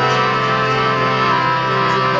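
Harmonium playing steady sustained chords, the instrumental start of a kirtan.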